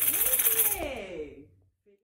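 Pandeiro jingles shaken in a rapid roll that stops under a second in and rings away to silence, while a voice calls out with its pitch sliding up and then down.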